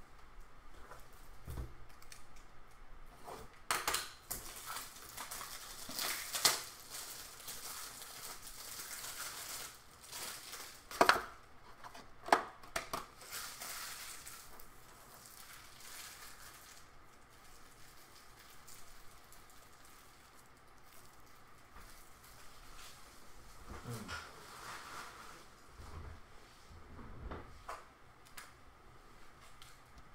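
Plastic card packaging being handled and unwrapped, with crinkling stretches and a few sharp clicks and knocks, the loudest about eleven and twelve seconds in.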